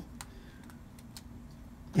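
A few light, sharp clicks as a phone and a black bumper case are handled in the hands, over faint room tone.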